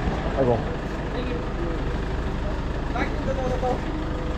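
A vehicle engine idling with a steady low rumble, with people's voices over it, including a short exclamation at the start.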